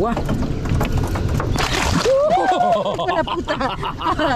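A short splash of water near the middle as a large chafalote is lowered over a boat's side and released into the river, with people's voices exclaiming.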